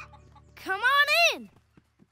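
Rooster crowing: one long call that rises, holds and falls away, starting about half a second in.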